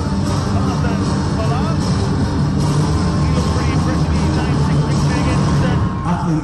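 Loud arena music with a steady, heavy bass, mixed with voices and crowd noise in a large hall.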